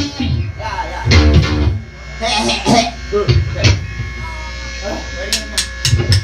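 Live rock band in a small room: loose electric guitar with a voice and scattered hits. A few quick sharp strokes come near the end, then the full band with drum kit comes in.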